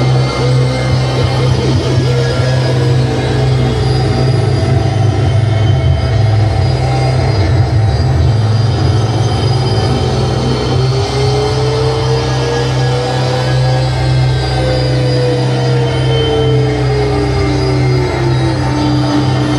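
Live harsh-noise improvisation on electronics: a loud, dense wall of noise over a steady low drone. In the second half a single pitched tone slowly rises, then glides back down.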